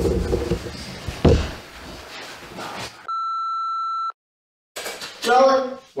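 Room noise with a single knock about a second in, then a steady high beep lasting about a second: the reference test tone that runs with a colour-bars test pattern. It cuts off sharply into a moment of dead silence.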